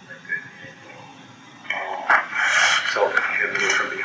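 Speech in a very poor-quality recording: faint hiss at first, then a muffled, distorted voice talking from a little under two seconds in.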